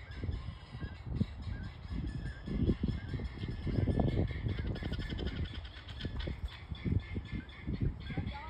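Guinea fowl calling, a rapid chattering run of calls that is busiest in the middle, heard under a low, uneven rumble.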